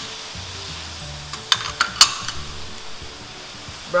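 Julienned vegetables sizzling as they are stir-fried in a metal wok and turned with two plastic spoons, with a handful of sharp clicks of the spoons against the pan in the middle.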